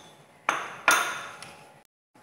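A metal spoon strikes a stainless steel cup twice, about half a second apart, and each clink rings on and fades.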